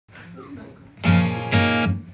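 Two chords strummed on a Taylor acoustic guitar, about a second in and half a second later, each ringing briefly, after a faint lead-in.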